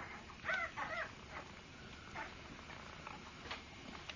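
Newborn Doberman Pinscher puppies crying in high, mewing squeaks: two short rise-and-fall cries about half a second apart, then a few fainter ones.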